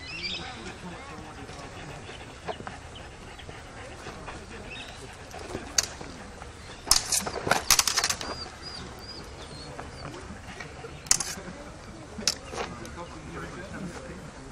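Longswords clashing during a sparring exchange: a few sharp knocks, the loudest a rapid flurry of strikes about seven to eight seconds in, with single strikes before and after.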